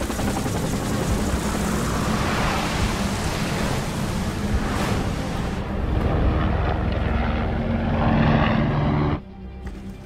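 Helicopter flying fast and low, its rotor and engine noise building in a dense film sound mix with music underneath. The sound cuts off abruptly near the end.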